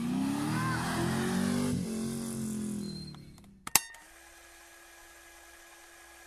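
A vehicle engine, its pitch falling as it fades out over about three seconds. Then a sharp click, followed by a faint steady hum.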